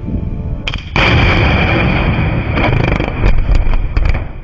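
Blasting charges detonating in an open-pit mine: a sharp crack just under a second in, then a loud sustained rumble of the blast with several further sharp cracks near the end.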